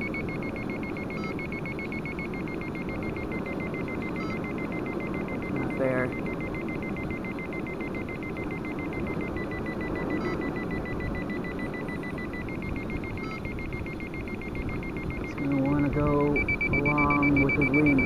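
A steady high electronic tone that steps up and down in pitch a few times, with a short beep about every three seconds, over a steady hiss. A man's voice comes in near the end.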